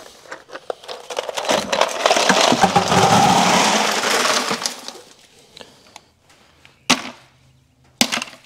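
Ice cubes poured from a plastic ice-maker bin into a plastic bucket: a dense clattering rattle of cubes lasting about three seconds. A single sharp knock comes near the end.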